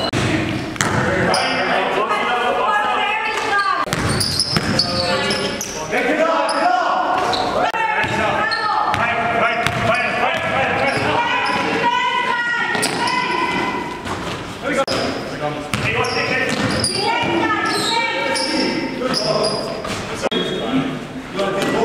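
Basketball game sounds in a large gym: a ball bouncing on the hardwood court among scattered impacts, with players' voices running underneath.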